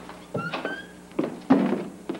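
A panelled door being handled: a knock of the latch with a short rising squeak, then two heavier thunks a little over a second in, the second the loudest.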